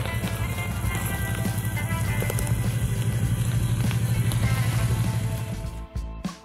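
Kawasaki Teryx 800 side-by-side's engine running with a fast, even pulse, mixed under background music. The engine sound cuts off suddenly near the end.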